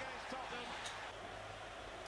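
Faint television football commentary, a man's voice low under a steady room hum, with a single soft click a little under a second in.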